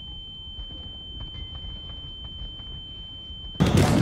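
A steady high-pitched ringing tone over a muffled low rumble: the ear-ringing effect of a soldier deafened and stunned by a blast. About three and a half seconds in, loud gunfire and explosions cut back in.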